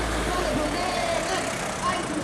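Indistinct voices of marchers in a street demonstration, talking as they walk. A low rumble sits under them for the first half second or so.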